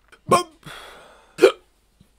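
A man making two short, sharp vocal sounds about a second apart, each trailing off in a breathy exhale.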